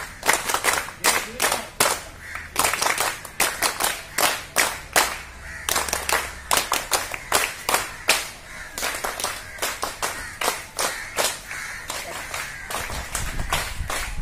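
A small group of people applauding by hand clapping, many quick, uneven claps overlapping, a welcoming round of applause that grows a little softer in the second half.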